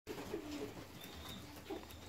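Domestic fancy pigeons cooing softly, a few short low coos scattered through the moment.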